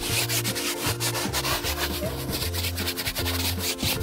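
Stiff nylon brush scrubbing a cloth car seat in rapid back-and-forth strokes, working cleaner into the fabric.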